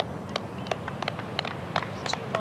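A run of sharp clicks or taps, about three a second, over a steady outdoor background hiss.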